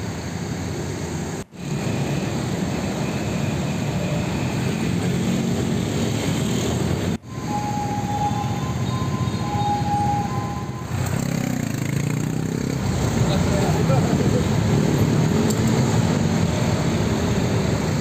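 Busy city road ambience: traffic noise with people talking, broken by two abrupt cuts. A steady high tone sounds twice in the middle, and the traffic grows louder in the last third.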